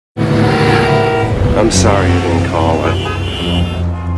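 Music mixed with steady car-engine and traffic noise, starting suddenly right after a moment of silence at a scene change.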